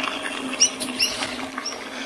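A string of short, high chirping squeaks, about six in two seconds, over a steady low hum and faint rolling noise from a mountain bike on a dirt trail.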